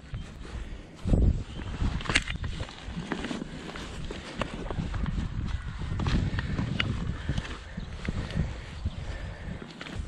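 Spade digging into wet turf and soil: irregular thuds of the blade going in and crunching, scraping earth as it is levered up. There is a heavy thud about a second in.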